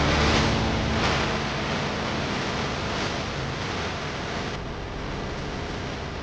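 Rushing whoosh sound effects of an animated TV title sequence, with soft swells about a second in and again around three seconds, slowly fading out.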